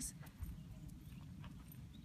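Faint hoofbeats of a Tennessee Walking Horse at a slow walk: a few soft knocks over a low rumble.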